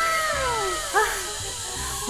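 A person's voice in a drawn-out, sing-song vocal sound that falls slowly in pitch, followed by a short rising-then-falling one about a second in.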